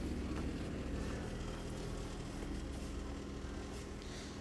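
A steady low mechanical hum, with a few faint knocks of footsteps as someone steps up into the trailer.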